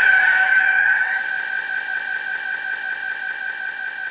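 A single held high electronic tone left ringing after the drum-and-bass track stops, wavering slightly at first, then steady and slowly fading.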